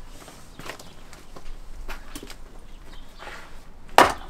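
Footsteps and light shuffling over a floor of wood chips, with a few faint knocks of wood, then a sharp chop as a hand splitting axe strikes a piece of firewood on the chopping block at the very end.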